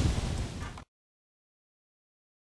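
Low rumbling background noise that cuts off abruptly less than a second in, followed by dead silence.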